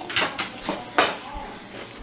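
Crunching of a ghost pepper potato chip being chewed: a few crisp crunches, the sharpest about a second in.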